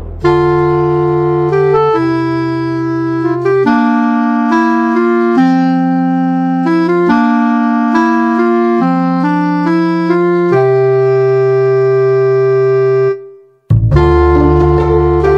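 Background music of held keyboard chords, changing every second or two. It cuts out for a moment near the end, then starts again.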